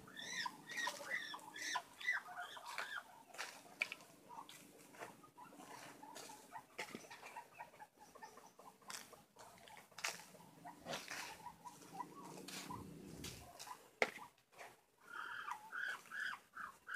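Faint chirping of birds, with scattered light ticks and rustles; the chirps are clearest in the first two seconds and again near the end.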